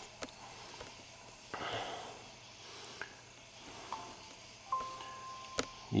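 Quiet room tone with a few faint clicks and a brief soft rustle, then a faint steady tone lasting about a second near the end.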